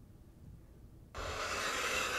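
A hand sliding across a wooden tabletop, a rubbing, scraping noise that starts suddenly about a second in and lasts about a second and a half, after a quiet start.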